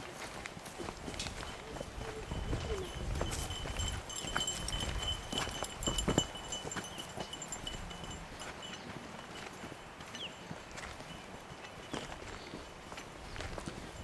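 Footsteps walking on a gravelly dirt trail: irregular scuffs and clicks, with a louder thump about six seconds in. A thin steady high whine runs through the first half and then stops.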